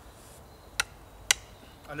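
Two sharp knocks about half a second apart, the second louder: a Mora Outdoor 2000 knife stuck point-first into a small wooden block.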